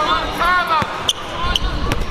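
Basketball dribbled on a hardwood gym floor: a few sharp bounces.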